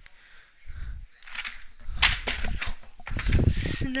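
Plastic toy monster truck launching and tumbling: a few sharp plastic knocks about two seconds in, then a rumbling clatter near the end as it hits and rolls.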